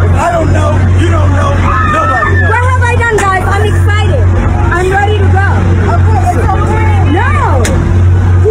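Several people talking and shouting over one another in a heated argument, with a steady low hum underneath.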